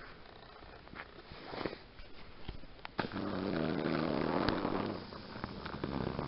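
Steady low hum of a vehicle, heard from inside the moving car, coming in suddenly about three seconds in, easing briefly near five seconds, then picking up again.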